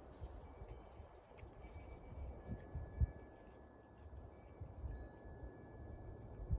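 Quiet outdoor ambience: irregular low rumbles on the microphone, with a sharper thump about three seconds in. Faint, thin high tones are held for a second or two at a time.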